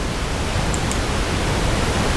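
Steady, even hiss with nothing else in it: the recording's background noise.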